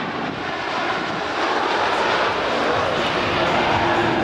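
Boeing 737 airliner's twin jet engines heard in flight during a display pass: a steady, even rushing noise.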